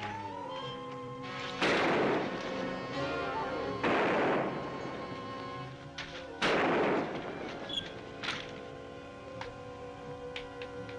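Three loud gunshots, about a second and a half in, near four seconds and near six and a half seconds, each with a long echoing tail, plus a couple of fainter cracks. Background music plays throughout.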